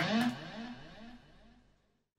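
Electric guitar's last note ringing out with a wavering pitch, about four or five wobbles a second, fading away over about a second and a half into silence.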